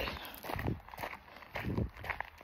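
Footsteps of a person walking on a woodland trail: two soft footfalls a little over a second apart.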